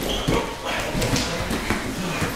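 Scuffling on a wrestling mat: irregular thuds of feet and bodies, mixed with short shouts and grunts.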